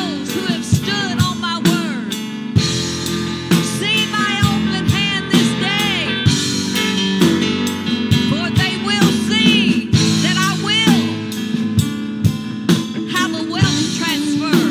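A woman singing into a microphone with long, wavering held notes over sustained keyboard chords and a drum beat.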